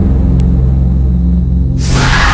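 Tense background score of low sustained droning tones with a rumble. Near the end a sudden loud rush of noise comes in.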